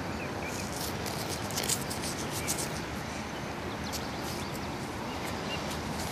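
Steady rush of wind and distant highway traffic, with scattered small clicks and rustles over it.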